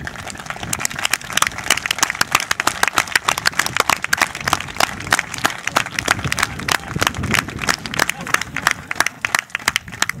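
A group of people clapping, a quick, irregular run of many hand claps lasting about ten seconds.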